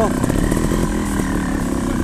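Trials motorcycle engine running steadily at low revs, a buzzy drone with a fast even pulse of firing strokes.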